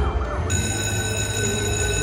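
Bank Buster video slot machine playing its electronic prize sound as it awards a $5 mini prize: a few short gliding tones, then about half a second in a steady, high, siren-like ringing tone with several overtones that holds on.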